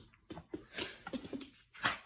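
Small fluffy puppy moving about on a hardwood floor, its claws clicking irregularly on the boards, with a short, sharp, breathy sound from the dog near the end.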